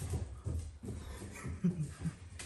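A dog whimpering briefly.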